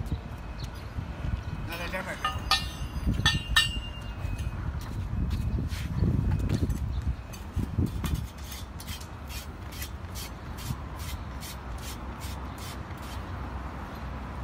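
Steel core-barrel parts clinking and knocking as they are handled, with one short metallic ring about three and a half seconds in, then a faint, even ticking about twice a second.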